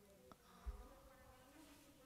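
Near silence: room tone with a faint steady hum, and a soft low bump under a second in.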